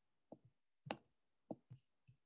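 Near silence broken by about five short, faint taps spread across two seconds, the loudest about a second in.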